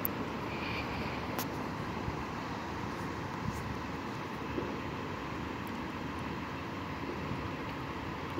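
Steady drone of idling transit bus engines, with a faint steady whine above it.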